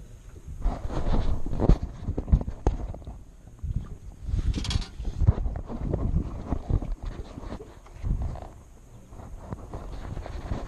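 Irregular knocks, thumps and rustling of handling noise as the camera is jostled and bumped against clothing and the hull of a small fishing boat, with a brief hiss about four and a half seconds in.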